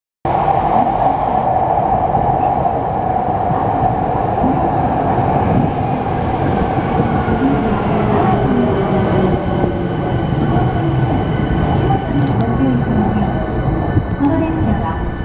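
Hankyu electric train pulling into the platform and slowing to a stop, with steady wheel and running rumble and a motor whine that fades as it slows. From about eight seconds in, thin steady high tones sound as it stands.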